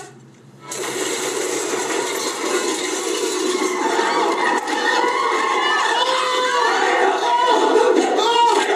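Commotion of a scuffle: a loud, steady din starting about a second in, with several voices shouting over one another, the shouting thicker from about four seconds in.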